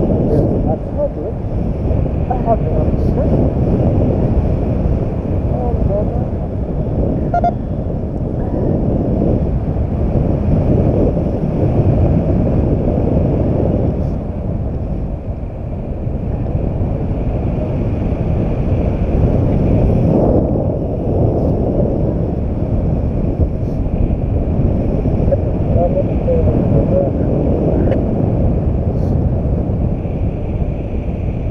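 Wind rushing over the microphone of a camera carried in flight on a tandem paraglider: a loud, steady low roar of buffeting airflow.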